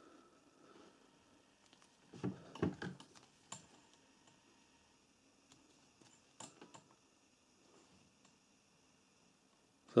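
Faint, scattered clicks and taps of multimeter test probes against a plastic wiring connector as it is handled. A small cluster comes about two seconds in, a single click a second later, and two more past six seconds, with near silence between.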